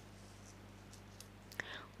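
Faint room tone with a low, steady electrical hum in a pause of the narration. Near the end there is a soft mouth click and a short breath.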